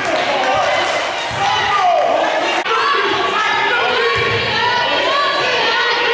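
Overlapping voices of players and spectators calling out during a basketball game in a gym, with a basketball bouncing once on the court about two and a half seconds in.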